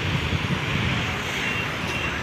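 Steady low rumble of motor traffic, an even outdoor drone with no distinct events.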